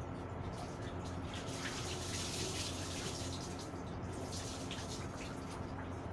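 Water from a wall tap running and splashing into a plastic bucket, swelling in the middle and easing off near the end.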